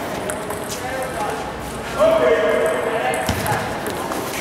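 Table tennis ball clicking sharply off the paddles and table at an irregular pace during a rally. A voice calls out loudly about two seconds in.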